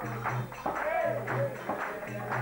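Bhajan: a group singing a Hindu devotional song to a steady rhythmic accompaniment, with hand-clapping among it.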